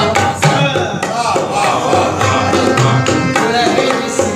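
Tabla and harmonium playing together as ghazal accompaniment, with quick, closely spaced tabla strokes over the harmonium's sustained notes.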